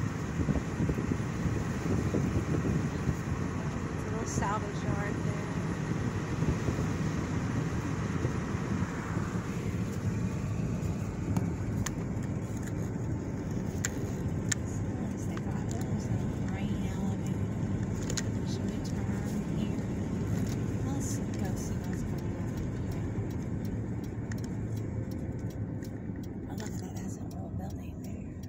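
Road noise heard from inside a moving car: a steady low rumble of tyres and engine, with extra wind hiss for roughly the first ten seconds that then eases off.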